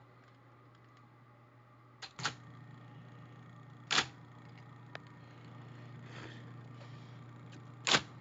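IBM Selectric typewriter's motor running with a steady low hum that grows louder after two clicks about two seconds in, and single sharp mechanical clacks from the typewriter's mechanism about four seconds in and again at the end.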